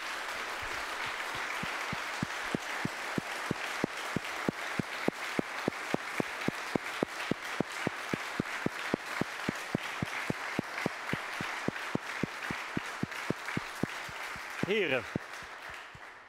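Audience applause. A couple of seconds in it turns into clapping in unison, about three claps a second. It thins out near the end, when a voice is briefly heard.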